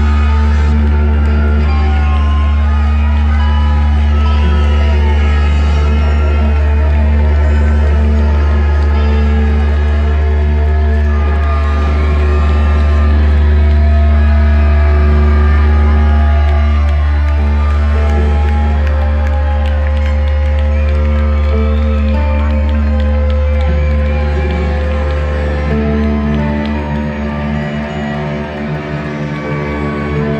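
Live rock band with a brass and reed section of saxophones, clarinets, trumpets and trombones playing long held notes together over a loud, steady low drone. The low drone thins out in the last few seconds.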